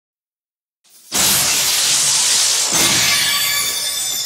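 After a second of silence, a sudden loud crash of dense noise bursts in and holds for about two seconds before starting to thin out: the opening crash effect of an electronic dance track.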